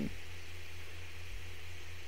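A pause in a man's talk: only the recording's steady background hiss with a low, even hum underneath.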